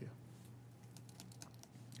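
Faint, scattered clicks of computer keyboard typing over quiet room tone with a steady low hum.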